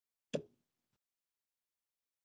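A single short, sharp knock about a third of a second in, followed by a much fainter tick just under a second in.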